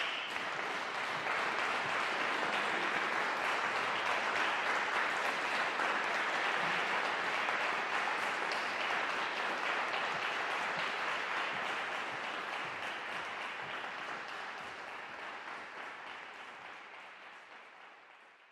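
Concert hall audience applauding, a dense and steady clapping that fades away over the last six seconds or so.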